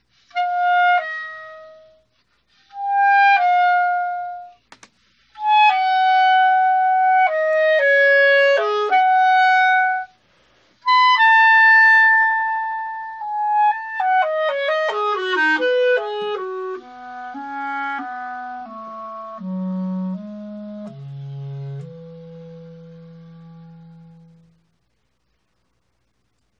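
Solo clarinet playing short phrases broken by brief pauses, then a quick descending run that slows into the low register. It grows quieter and ends on a long held low note that fades away.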